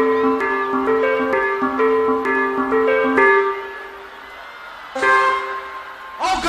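A live forró band playing an instrumental passage. A bright melodic riff of two alternating notes repeats in a steady rhythm and stops a little past halfway, followed by a short lull and then a single held chord near the end.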